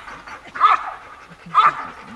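Dobermann barking at the protection helper in a steady, evenly spaced series, the hold-and-bark of the protection phase: two loud barks about a second apart.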